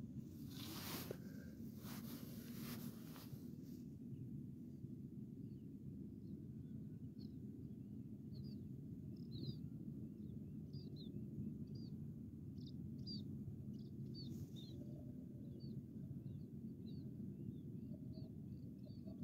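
Faint outdoor ambience: a small bird chirping repeatedly, short high chirps about once a second, over a low steady rumble.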